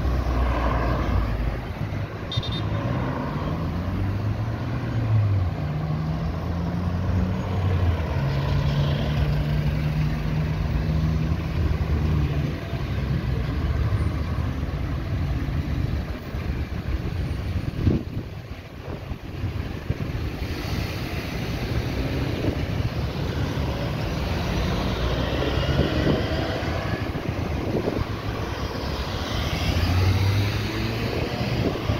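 Road traffic: a steady stream of cars and small SUVs driving past close by, their engines and tyres heard throughout. One engine's pitched note holds for several seconds about a third of the way in.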